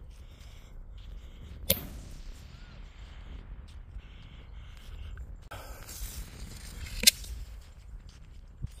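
Aerial fireworks firing: two sharp bangs about five seconds apart, the second one louder and preceded by a second or so of hissing.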